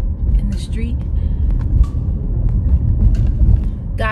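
Low, steady rumble of a car in motion, heard from inside the cabin.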